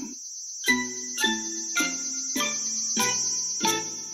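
A simple tune of single struck, ringing notes, about one every 0.6 seconds, starting under a second in, over a steady high-pitched insect-like trill that wavers evenly.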